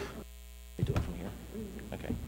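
Steady low electrical mains hum in the audio feed, with a few faint clicks and a brief murmur of voice about a second in.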